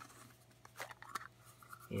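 A soft, cheap plastic screw-top case being unscrewed by hand: faint scratching of the plastic threads with a few small clicks.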